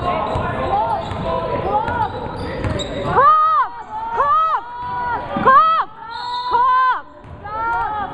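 A basketball is dribbled on a hardwood gym floor. From about the middle on, sneakers squeak sharply on the floor about six times, short high squeals that are the loudest sounds here.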